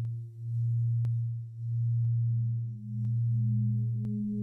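Low, steady electronic drone tone of meditation background music, swelling and dipping in loudness about every second and a quarter, with a second, higher tone joining about halfway through.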